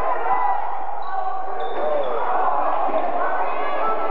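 A basketball bouncing on a gym floor during a game, with indistinct shouting voices of players and spectators echoing in the hall.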